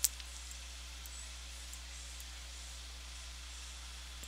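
A single sharp mouse click right at the start, then a few faint ticks, over steady microphone hiss and a low electrical hum.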